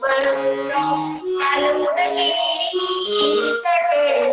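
A woman singing a poem into a handheld microphone, holding notes that step up and down through a melody. The sound is compressed, as over video-call audio.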